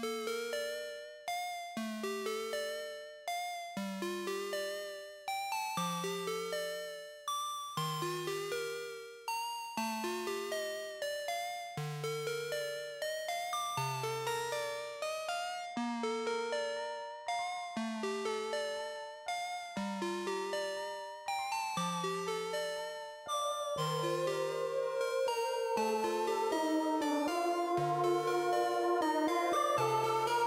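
Playback of a synthesizer interlude, largely a Roland Juno-60: short plucked notes in a repeating arpeggio over a low note struck about once a second, each note dying away quickly. A fuller, sustained layer builds in about 23 seconds in.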